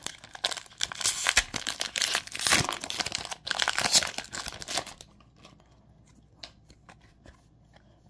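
Foil wrapper of a Pokémon trading card booster pack being torn open and crinkled: a dense run of tearing and crackling for about five seconds, then only a few faint ticks as the cards are handled.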